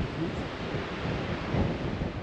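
Strong gusting wind buffeting the camera microphone: a steady rushing noise with uneven low rumbling thumps as the gusts hit.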